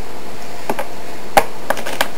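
A few small clicks and taps of tack being handled and taken off a plastic model horse. The sharpest click comes about midway, with a couple of lighter ones near the end.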